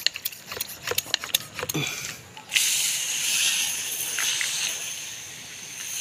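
Water spray hissing steadily, switched on suddenly about two and a half seconds in, after a run of light clicks.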